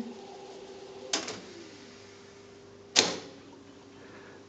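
Akai X-360 reel-to-reel tape recorder's transport clunking twice as its push-button controls are pressed, about two seconds apart, the second clunk louder. A faint steady hum runs underneath.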